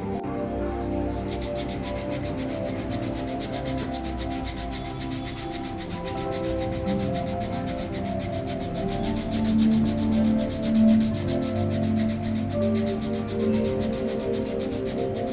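Foot file scraped quickly back and forth over the sole of a bare foot, a fast, even rasping that starts about a second in, over soft background music.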